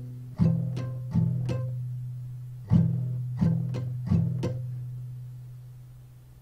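Capoed acoustic guitar strummed very slowly in the Pallavi strumming pattern: a group of four strums played twice, each chord left ringing and fading out after the last strum.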